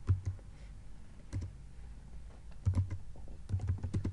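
Typing on a computer keyboard: short runs of keystrokes with pauses between them, a cluster at the start, one about a third of the way in, and two more near the end.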